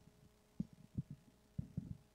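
Four soft, short low thumps over a faint steady hum: handling noise from a handheld microphone being lowered and moved in the hand.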